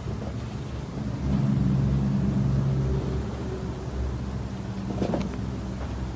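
A steady low mechanical hum, like a motor running, a little louder between about one and three seconds in, with a faint tap or two near the end.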